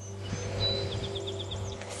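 A songbird singing in the background: a thin, high held whistle, then a quick run of about six short notes about a second in. A steady low hum runs underneath.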